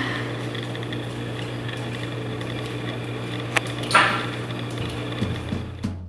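Steady low electrical hum with room tone, broken by a sharp click about three and a half seconds in and a brief noisy burst just after.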